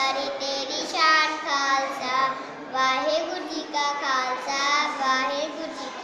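A child singing a Punjabi poem in a melodic recitation, one voice in phrases of about a second with short breaks between them.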